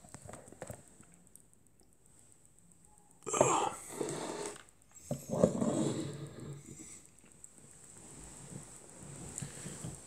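A man's wordless vocal reactions after tasting a drink he dislikes. A short noisy burst comes a little over three seconds in, then a longer voiced groan-like sound from about five to seven seconds.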